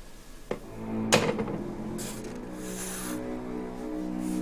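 A short knock and clack, the loudest sound here, just over a second in, as a telephone handset is set down on its cradle. Background music comes in around it with low held notes.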